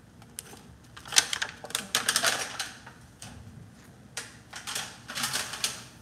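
Aluminium foil crinkling and clattering as a foil-covered dish is handled and put into the oven, in two spells of dense clicks: about a second in, and again after four seconds.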